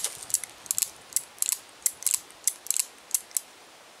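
Cimarron Lightning .38 Special revolver's action worked by hand: a quick series of sharp metallic clicks, about three or four a second, as the hammer is drawn back and the cylinder indexes and locks up chamber by chamber, here with fired cases in it. The clicks stop shortly before the end.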